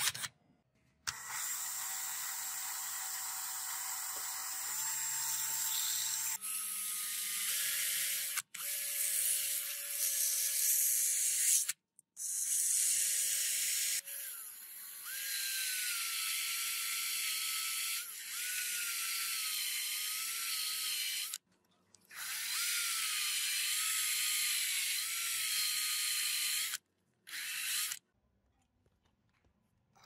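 Cordless drill running in several long stretches, a steady motor whine with a hiss over it as it spins a small metal lighter part against 3000-grit sandpaper; the whine's pitch dips and wavers in the later stretches.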